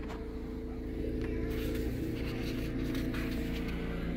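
A steady low hum made of several held tones, from a motor or machine running in the room, with a faint click about a second in.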